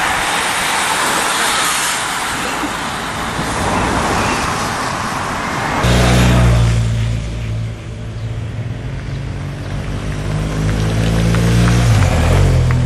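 Rushing road noise as racing cyclists and their following team cars pass, then after about six seconds a steady low hum from a motor vehicle's engine running close by.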